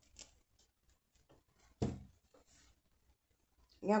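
Faint rustling and small handling noises of craft materials being moved about on a table, with one soft knock about two seconds in as something is set down.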